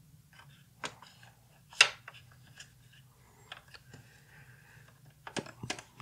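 35mm slides being dropped into and settling in the plastic tray of a Sawyer's Pana-Vue Automatic slide viewer: scattered sharp clicks and taps, the loudest about two seconds in and a quick cluster near the end.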